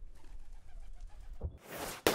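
Faint pigeon cooing over quiet street ambience. Near the end comes a sudden loud rush of hiss, a news-graphic transition effect.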